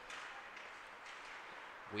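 Faint, steady hiss of ice-rink ambience during play, with no distinct knocks or calls standing out.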